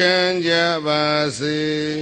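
A Buddhist monk chanting into a microphone: a man's voice holding a few long notes on a nearly steady pitch, with short breaks between them.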